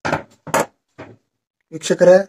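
A few short rubbing and knocking sounds of a hand and cloth on a wooden worktable in the first second, then a man's voice starting to speak near the end.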